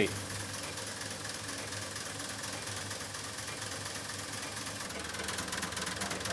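The Zuse Z3 replica's telephone-type relays clattering in a rapid, continuous stream of clicks as the machine computes, working through a program read from punched film, over a steady low hum.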